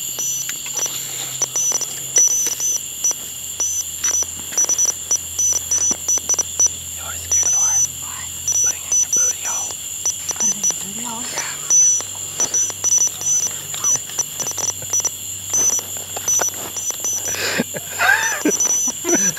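Short high-pitched beeps switching on and off in an irregular pattern, like Morse code, over a steady high whine, crackling clicks and a low hum that shifts pitch in steps.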